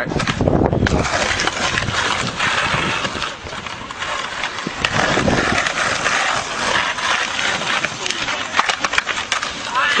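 Skateboard wheels rolling on a rough asphalt path: a steady rolling noise broken by many small clicks and clacks from the board.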